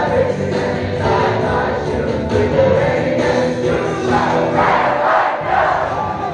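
A large crowd of young people singing a song together, led by a singer on a microphone. The voices swell into a louder surge of shouting about five seconds in.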